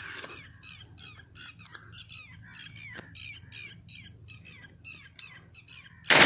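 Birds chirping in a quick run of short, repeated calls, about four a second, with a couple of faint clicks.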